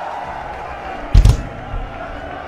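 Drum kit struck once, a loud short thump about a second in, over the steady murmur of a large concert crowd.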